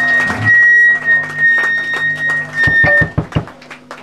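Live band music: a high sustained tone over low held bass notes, with a quick run of low thumps about three seconds in.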